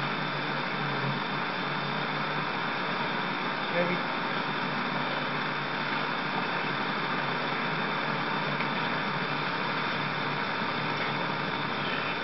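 Steady background hiss with a faint hum, unchanging throughout, and a person saying one word about four seconds in.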